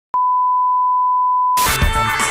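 Steady 1 kHz colour-bars test tone, one unbroken beep held for about a second and a half. It cuts off abruptly and loud music with heavy bass starts near the end.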